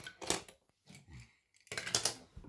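Die-cast metal toy cars clinking and clattering against each other and the wooden floor as they are picked up and set down, a few short clatters with the longest near the end.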